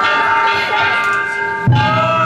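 Danjiri festival float's hand gongs ringing, many overlapping metallic tones held over each other. About 1.7 seconds in, a louder, deeper rhythmic part comes in suddenly.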